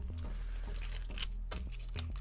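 LP record jackets in plastic outer sleeves being handled and swapped: soft rustling and crinkling, with a couple of light knocks about a second and a half in.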